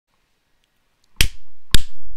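Two sharp finger snaps about half a second apart, starting just over a second in, each with a short reverberant tail.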